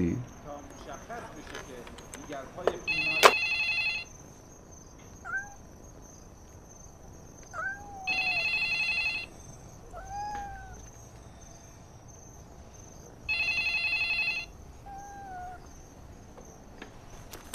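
Electronic desk telephone ringing in warbling bursts of about a second, three rings about five seconds apart. Between the rings a cat meows four times in short rising-falling calls. A sharp click comes about three seconds in.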